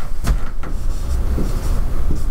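Dry-erase marker writing on a whiteboard: a few light taps and scratches over a steady low rumble.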